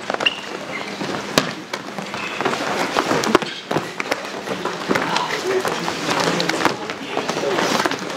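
Wrestlers scrambling on mats: scattered sharp slaps and thuds of bodies, hands and feet hitting the mat, with voices in the background.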